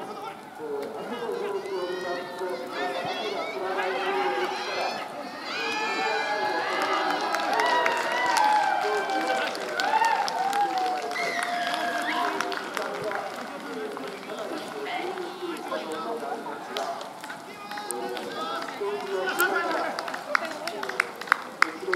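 Several voices shouting and calling out at once on a rugby pitch, overlapping, loudest in the middle of the stretch.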